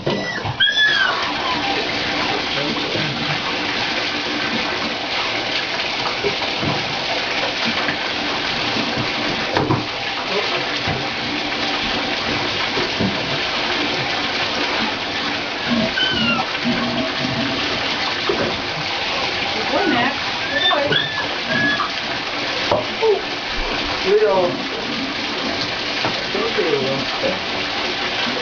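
Bath tap running into a partly filled bathtub: a steady rush of water that starts just after the beginning and holds throughout. A few short high squeaks sound over it now and then.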